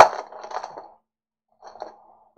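Foil trading-card pack wrapper being torn open and crinkled by hand. A sharp crackle opens it, then rustling fades out before halfway, with a few faint crinkles near the end.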